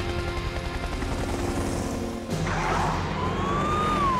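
Cartoon sound effects over background music with held notes. About two seconds in, a loud rushing whoosh and a siren tone that slowly rises and then starts to fall, as the animated fire truck speeds off with its lights going.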